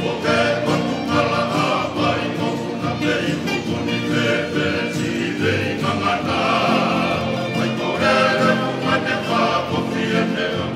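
A choir of many voices singing together in harmony, steadily and without a break.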